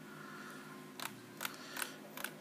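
Three short, sharp clicks from about a second in, close together, like taps and handling on the tablet that is recording, over a faint steady hum.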